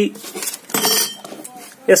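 Steel hand tools being handled: a round slotted SWG wire gauge plate and a digital caliper give light metallic clinks and scrapes, the brightest about a second in.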